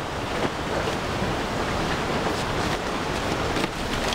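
Steady rushing noise, like wind on the microphone, with faint rustling and crinkling as a rolled bundle of banana leaves is tied with cord and lifted.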